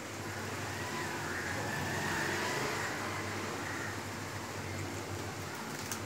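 Steady background road-traffic noise, with a faint wavering whine in the middle.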